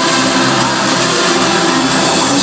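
Hardstyle dance music played loud over a club sound system, a dense, steady wall of held synth chords.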